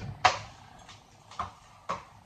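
A few sharp, short clicks or taps, irregularly spaced, with quiet between them.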